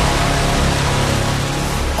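Dramatic radio game jingle: loud music with a dense, hissing wash over sustained low notes.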